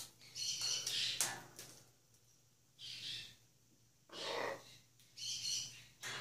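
Blue-and-gold macaws making short, rough calls, about five brief bursts spread over six seconds.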